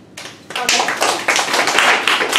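Audience applauding. A few scattered claps open it, then full, loud clapping sets in about half a second in.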